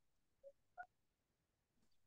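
Near silence, broken by two faint, very short beeps, the first about half a second in and the second, slightly higher, just under a second in.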